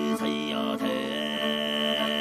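Music of overtone throat singing: a steady low drone with a high, whistle-like overtone above it that glides, then holds one note from about halfway through.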